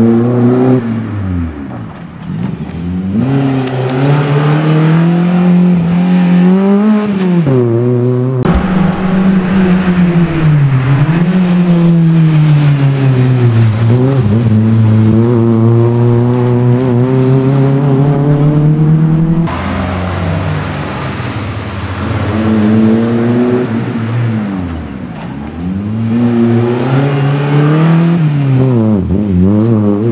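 Suzuki Swift GTi MK1's 1.3-litre twin-cam four-cylinder engine driven hard at racing revs, its pitch climbing and falling over and over as the throttle is opened and closed, with several sharp drops in between.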